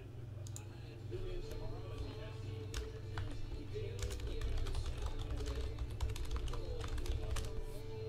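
Typing on a computer keyboard: quick, irregular key clicks that start about a second in and are densest in the second half, over faint background music and a steady low hum.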